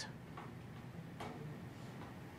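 Two faint clicks, under a second apart, over quiet room noise.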